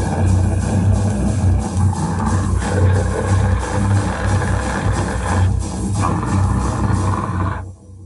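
Live band playing loudly on electric guitar, bass and drums, with a heavy bass end; the song cuts off abruptly near the end.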